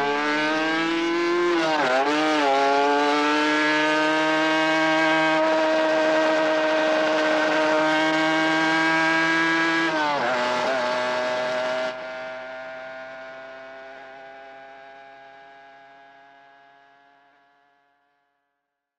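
An engine revving up and held at high revs, with a brief drop and recovery in revs about two seconds in and again about ten seconds in. It thins out suddenly about twelve seconds in and fades away.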